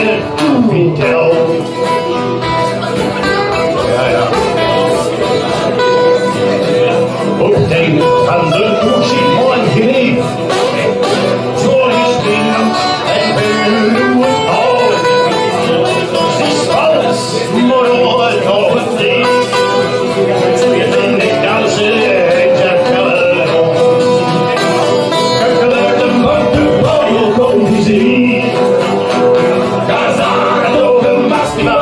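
Live music: two acoustic guitars strummed together, with a man singing into a microphone in places.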